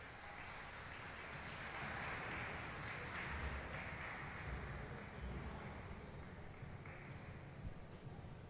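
Faint applause from a small crowd in an ice rink, fading out near the end.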